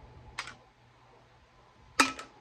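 Sipping from a plastic shaker bottle: one short sip noise about half a second in, then quiet, and a sharp click near the end as the bottle comes away from the mouth.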